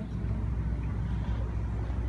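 Steady low rumble of road traffic and vehicle engines.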